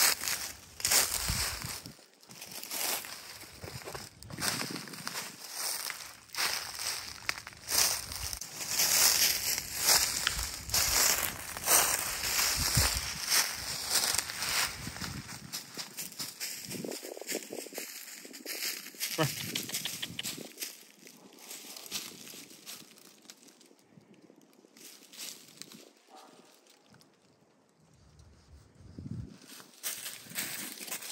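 Footsteps crunching through dry leaf litter on a forest floor, quick and steady for about the first half, then slower and quieter, almost stopping shortly before the end.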